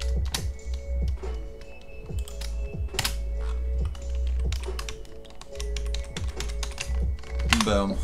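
Typing on a computer keyboard: irregular key clicks and sharp taps, several a second in spurts, over background music with held notes and a steady low bass.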